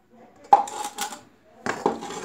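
Stainless steel bowl clanking: a sharp metal strike about half a second in that rings briefly, then more clattering near the end.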